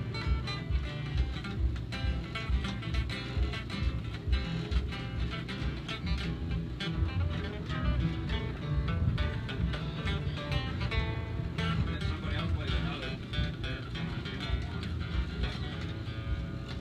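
Acoustic guitar playing in an informal jam, picked and strummed with a steady beat.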